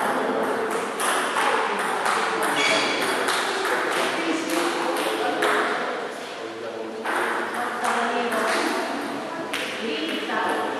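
Table tennis balls clicking irregularly against tables and bats, with people talking in the background.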